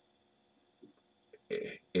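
Quiet room, then near the end a man's short, throaty vocal sound of about a third of a second, running straight into speech.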